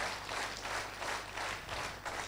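Audience applauding, fairly soft and steady.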